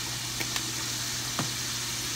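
Squash, onions and butter sizzling softly in a pan on the stove, over a steady low hum. A few faint clicks come through, about half a second in and again near the middle.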